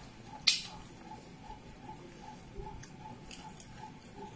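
Eating pounded yam by hand: one sharp, wet mouth smack as a morsel goes into the mouth about half a second in, then quiet chewing. A faint, regular ticking pulse, nearly three a second, runs underneath.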